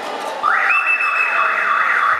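Electronic siren-like signal from a wrestling scoreboard, sweeping up about half a second in and holding, with a steady higher tone over it for about a second.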